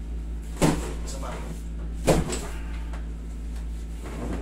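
Two short knocks about a second and a half apart over a steady low hum, as a man's leg is bent and moved on a padded treatment table.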